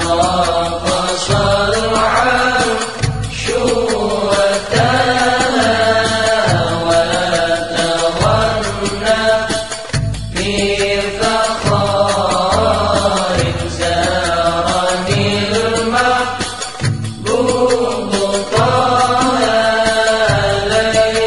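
Sholawat, Islamic devotional song: voices singing a melody over instrumental backing, with a bass line that changes note about once a second.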